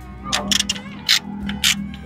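About half a dozen short, sharp metallic clicks from a hand wrench working a bolt on a truck's front steering linkage, over steady background music.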